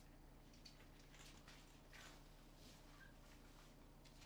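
Near silence with a few faint, brief rustles of a small chest bag's fabric strap and buckle being handled.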